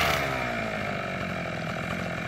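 Petrol brush cutter's small two-stroke engine coming down off the throttle in the first half second, then idling steadily.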